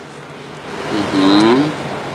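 A person's drawn-out wordless 'uhh' groan, about a second long in the second half, rising and then falling in pitch.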